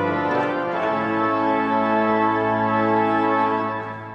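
Organ playing sustained chords, moving to a new chord just under a second in and beginning to fade near the end.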